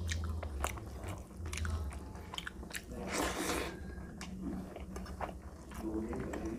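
Close-up chewing of a hand-fed mouthful of rice and fried fish: wet mouth clicks and smacks, with a longer, louder wet sound about three seconds in.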